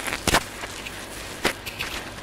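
Handling noise of a Sony ECM-LV1 lavalier microphone as a foam windscreen is worked onto it by hand: two sharp scratchy knocks about a second apart, with softer rubbing between, over a steady hiss.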